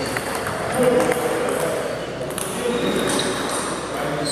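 Table tennis balls clicking off bats and tables, a few scattered hard ticks, over the chatter of voices in the hall.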